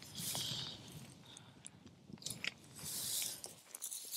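Dry cut hay rustling and crunching, with light plastic handling clicks from a hay-packed sampler tube, in two soft patches about two seconds apart.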